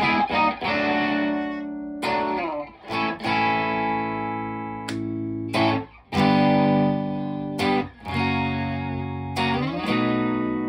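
Electric guitar, a Fender Stratocaster played through a Vemuram Jan Ray overdrive pedal into a Fender Deluxe Reverb amp. Chords are struck about once a second or two and each is left to ring and fade. The pedal gives a light overdrive like a Fender amp on the edge of breakup.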